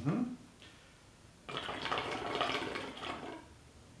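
Water bubbling in a hookah's glass base as air is drawn through the hose, starting about a second and a half in and lasting about two seconds. This is an air-tightness test of the pipe, done with the bowl off and the water filled high.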